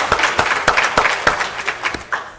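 Audience applauding: many hands clapping together, fading away near the end.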